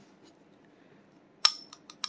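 Near silence, then about a second and a half in a sharp metallic click with a brief ring, followed by a few fainter clicks, as a Kimber 1911 pistol is picked up and handled.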